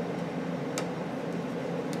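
Small screwdriver working a motherboard screw in a laptop, giving two light clicks, one a little under a second in and one near the end, over a steady low hum.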